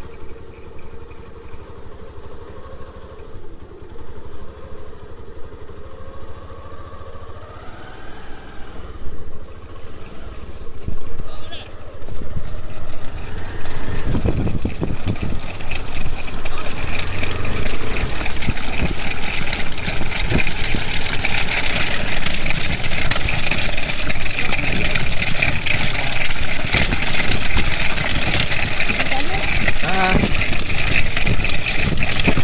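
A motorcycle engine running steadily. About halfway in it is joined by louder pounding of hooves and the rattle of a light racing cart as a pair of bullocks gallops close.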